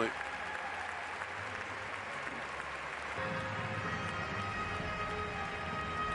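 Large arena crowd applauding, a steady wash of clapping, with faint music underneath that grows fuller about halfway through.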